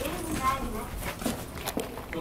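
Indistinct background speech with a few footsteps and light knocks.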